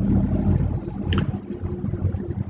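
Low rumbling background noise with a steady low hum on a desk microphone, and one short high chime about a second in.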